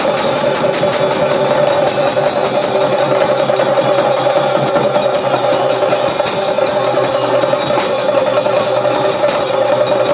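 An ensemble of chenda drums beaten with sticks: a fast, dense, unbroken roll of strokes at a steady loudness.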